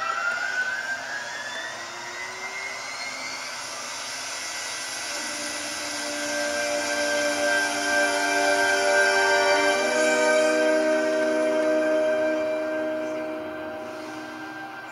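Background television soundtrack: a rising pitch glide, then several held tones like a sustained chord, swelling louder about halfway through.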